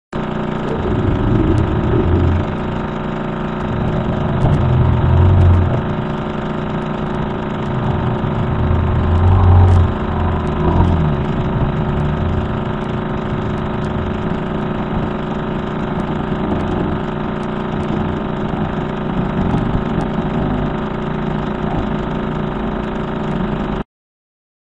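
Audio recording played as a strange radio-telescope RF signal: a dense, steady drone of many held tones with heavier low swells a few times in the first ten seconds. It starts and cuts off abruptly.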